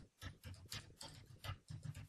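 Computer keyboard keys clicking in a quick, irregular run of strokes as a couple of words are typed.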